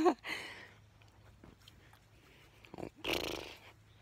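A person's breathing after laughing: a short breathy puff just after the start, then a louder sharp breath about three seconds in.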